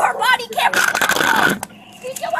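Raised human voices, then a harsh, strained cry or shout lasting almost a second, followed by a single sharp click.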